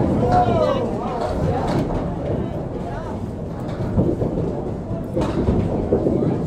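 Candlepin bowling alley: a steady low rumble of balls rolling down wooden lanes, with voices talking in the background.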